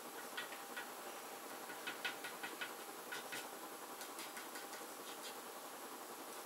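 Pastel stick dabbing and scratching on paper in short, irregular strokes: faint light taps and scrapes.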